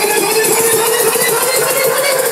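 Loud electronic dance music from a live DJ set over a club sound system: a single sustained synth note held with a slight rise in pitch, with no clear beat under it.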